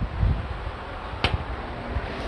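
Electric fan running, a steady rush of air noise that is loud enough to dominate the recording, with one short sharp click a little over a second in.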